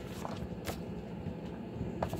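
Sliding paper trimmer and cardstock being handled, with its cutting arm lifted and the sheet repositioned: two light clicks in the first second and another near the end, over a low steady hum.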